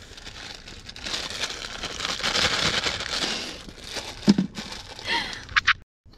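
Plastic wrapper of a Maruchan instant ramen package crinkling for a few seconds as it is torn open. A short low sound comes a little after four seconds, and two sharp clicks come near the end.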